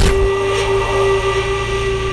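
A sudden whoosh-hit, then a single steady held tone with a low hum beneath it: a sustained note or drone in a TV drama's background score.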